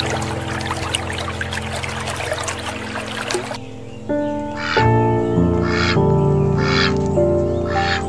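Background music of sustained held notes. For the first three and a half seconds a dense crackling, trickling noise runs under it. After about four seconds the music grows louder, with a soft stroke about once a second.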